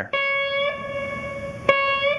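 A single guitar note picked and left ringing, played as a slight half bend, then picked again near the end.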